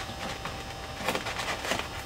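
Fingers rubbing tape strips down onto a Depron foam tube: soft scratchy rustling, with a few louder scrapes in the second half.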